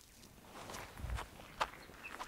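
Footsteps in flip-flops on dry bark and leaf litter: a few faint steps as a person walks away.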